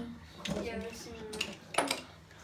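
Makeup containers and tools clinking and clacking as they are moved about in a search for an eyeshadow palette, with a few sharp clacks in the second half, the loudest near the end.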